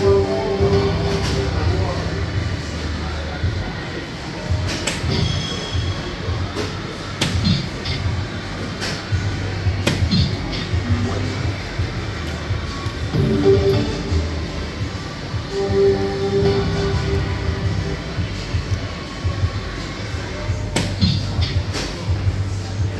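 Steady background music and voices, with short electronic sound effects from a DARTSLIVE 3 soft-tip dart machine. A few sharp clicks of soft-tip darts hitting the board come about two seconds apart, and another pair near the end.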